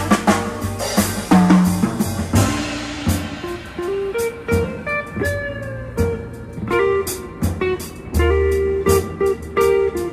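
Live instrumental band: a Telecaster electric guitar plays melodic lines over a drum kit and bass, with cymbal and drum hits that are busiest in the first few seconds.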